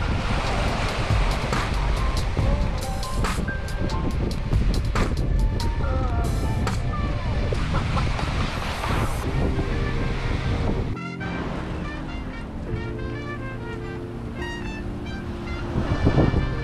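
Small waves washing onto the shore with wind buffeting the microphone, under background music. About eleven seconds in, the wind and surf drop away and the music carries on alone.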